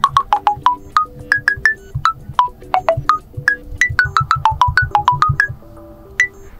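Honor 9A smartphone's 'Melody' keypad tones: each tap on the dial pad plays a short pitched note, a different pitch from key to key, in a quick run of about five notes a second that stops shortly before the end.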